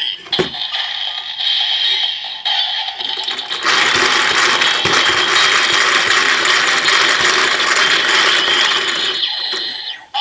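Kamen Rider Build DX Build Driver toy belt: a steady electronic tone plays from the belt for the first few seconds, then from about three and a half seconds in its hand crank (the Vortex Lever) is spun fast, a dense ratcheting clatter of plastic gears lasting about five and a half seconds.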